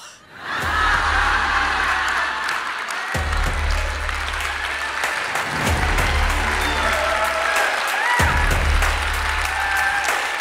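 Audience applause after a punchline, over a backing music track that starts up about half a second in, its deep bass coming in repeated phrases roughly two and a half seconds long.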